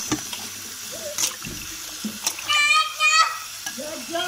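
Tap water running and splashing into a steel bowl as hands rub and wash cut pieces of rohu fish. A high-pitched voice calls out briefly, twice, about two and a half seconds in.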